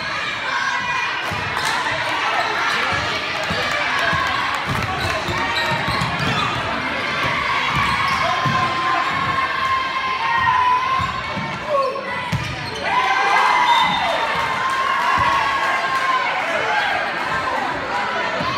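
Basketball bouncing on a hardwood gym floor during play, repeated thuds under the voices of players and spectators, echoing in the large gym.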